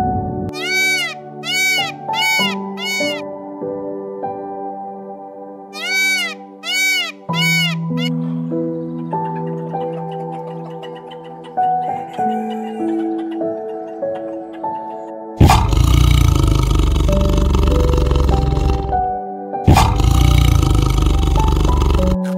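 Soft ambient piano music throughout, with two runs of repeated chirping, rising-and-falling tones in the first seven seconds. About fifteen seconds in, a tiger roars loudly over it in two long, rough calls, the second starting about twenty seconds in.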